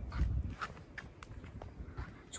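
Footsteps on a concrete sidewalk, faint and evenly paced at about two to three steps a second, with a low rumble of handling or wind on the microphone near the start.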